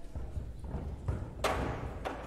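Chairs and music stands being moved about on a stage: scattered knocks and thuds, with one louder clatter about one and a half seconds in.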